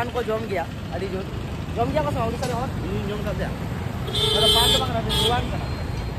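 Street traffic rumbling, with a vehicle horn sounding twice about four seconds in: a longer toot, then a short one.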